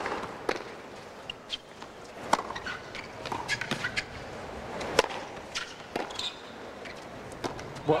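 Tennis ball struck by rackets in a rally on a hard court: a serve hit right at the start, then sharp hits every second or two, the loudest about five seconds in, over a low crowd hush.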